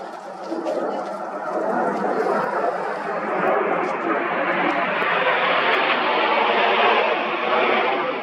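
Jet noise from a formation of nine Red Arrows BAE Hawk T1 jets passing overhead, a steady rushing sound that grows louder over the first couple of seconds as they approach, then holds.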